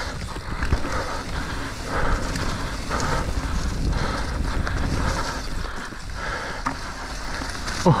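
Mountain bike rolling fast down a dirt singletrack strewn with dry eucalyptus leaves: steady tyre noise over dirt and leaves with rattling from the bike, and wind on the microphone.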